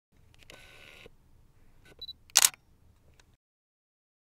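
Camera sounds: a short mechanical whirr near the start, a brief high beep about two seconds in, then a loud shutter click followed by a faint click.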